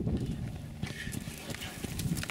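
Hoofbeats of a ridden horse on a sand arena, heard as scattered soft thuds and clicks.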